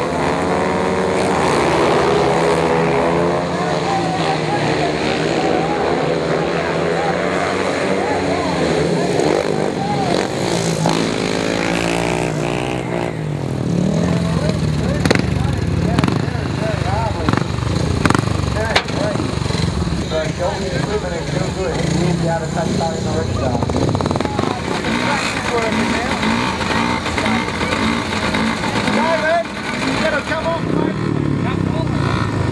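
Several speedway motorcycles, 500cc single-cylinder racing engines, revving off the start and racing round the track, their engine notes rising and falling and overlapping. After about 13 seconds the sound turns rougher and less even, with sharp knocks in it.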